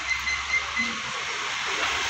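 Steady outdoor background hiss with a faint low hum, with no single distinct event.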